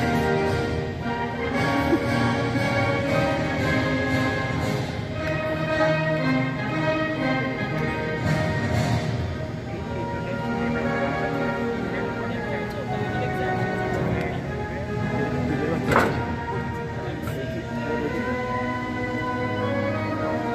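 A national anthem playing, sustained instrumental music at a steady level. A single sharp knock cuts through about sixteen seconds in.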